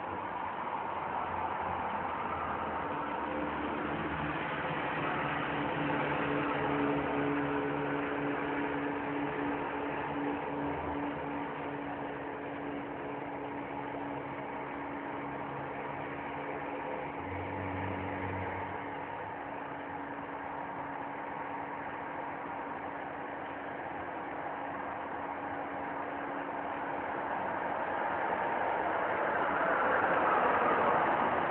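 A motor engine running steadily outside, a low hum over a noisy wash, with its tones shifting now and then and growing louder near the end.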